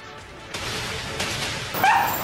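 Street noise with vehicles passing, and a dog barking once near the end.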